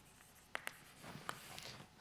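Chalk writing on a blackboard: a few faint sharp taps and short scratches of the chalk against the board.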